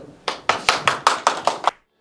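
Audience clapping: a quick run of claps that cuts off suddenly near the end.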